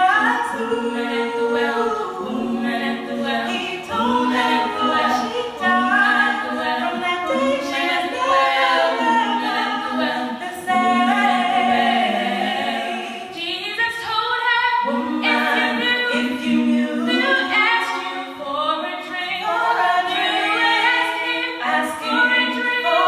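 Three women's voices singing an a cappella gospel song in close harmony, with held notes and a brief pause about two-thirds of the way through.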